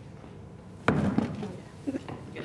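A single sharp knock about a second in as the avocado pit is knocked off a kitchen knife into a bin, followed by a brief voice.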